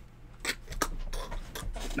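A few short rubbing and knocking sounds, the handling noise of a man lurching about in a headset.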